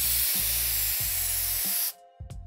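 Spray-paint can hiss sound effect for a graffiti-style transition, laid over music with a low bass line. The hiss stays steady and cuts off suddenly near the end.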